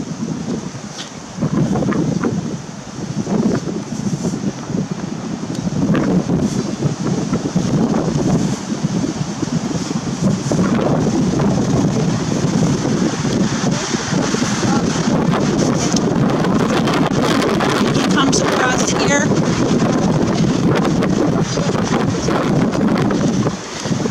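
Wind buffeting the microphone, a loud steady rushing, with rustling as the camera is carried in among spruce branches. The rushing starts about a second and a half in.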